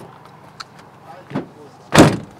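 A van door slammed shut with one loud bang near the end, after a short burst of voice about a second and a half before it.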